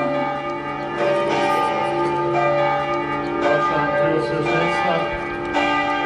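Church bells ringing, several bells overlapping with long ringing tones. Fresh strikes come every second or two.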